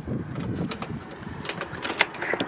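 A front door being opened: low rumbling handling noise, then a quick run of sharp clicks and a loud knock near the end.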